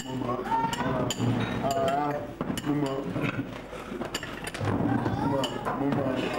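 Several people chatting at once, with the light clink of cups, glasses and cutlery at the tables.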